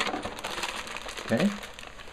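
Cardboard toy box being torn and pulled open by hand, with a run of quick crackles and rustles.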